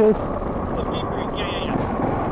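Steady motorcycle riding noise on a gravel road: engine, tyres and wind running together at an even level.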